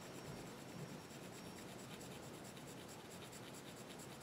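Colored pencil shading lightly on paper: a faint, steady scratching of the lead as it is stroked over the drawing.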